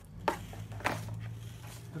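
Two brief rustles or taps as clothing and items are handled in a cardboard box, over a low steady hum.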